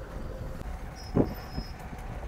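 Steady low engine and road rumble inside a moving truck's cab, with a brief knock about a second in.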